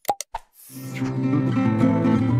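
Three quick click-pops, the mouse-click sound effects of an animated subscribe-button card, then background music starts about half a second in and carries on.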